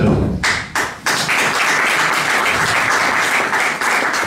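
Audience applauding: dense, steady clapping that starts about half a second in.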